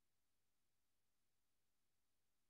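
Near silence: the audio is all but cut off, with nothing but a faint noise floor.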